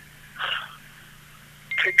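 A man's voice over a telephone line pausing mid-sentence: a short breath comes through the phone line against a steady low line hum, then he starts speaking again near the end, with a thin steady high tone beginning under his voice.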